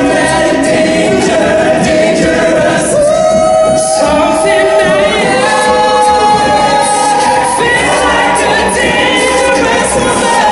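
All-male a cappella group singing into handheld microphones: several voices holding layered chords with no instruments, some notes sliding in pitch.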